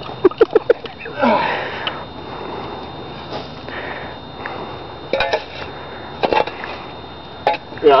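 Laughter and breathy vocal sounds, with a few short sharp cracks about five and six seconds in as the bent wooden back of a chair is wrenched apart by hand.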